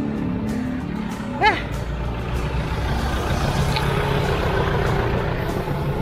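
Steady rush of wind and road noise from a bicycle rolling along, with a short shout about a second and a half in.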